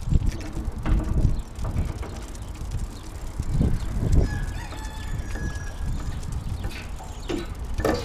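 A rooster crowing faintly in the distance, one call lasting about two seconds from roughly four and a half seconds in, over a steady low rumble and scattered knocks of walking noise on the microphone.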